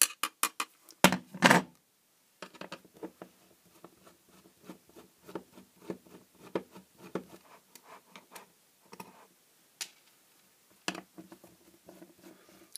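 Handling clicks and light knocks of a round LED ceiling panel's metal back and a screwdriver against it: a few sharp clicks in the first two seconds, then a long run of small irregular ticks.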